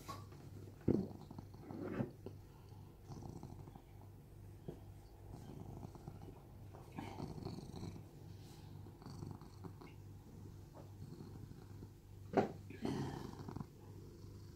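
Seal-point domestic cat purring steadily and softly, close to the microphone. A couple of short knocks about a second in and near the end.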